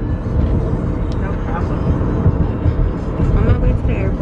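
Steady low rumble of a moving car heard from inside the cabin: road and engine noise, with faint muffled talk behind it.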